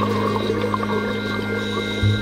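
Background music of sustained, droning low notes.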